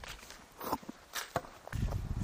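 Footsteps on a dirt path: a few separate, irregular steps, with a low rumble coming in near the end.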